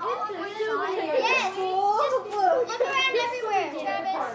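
Children's high, excited voices calling out continuously, several at once.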